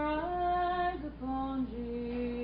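A woman's solo voice singing a slow hymn, holding long notes, stepping up in pitch about a quarter of a second in and dropping to a lower note about a second in, over a steady low hum.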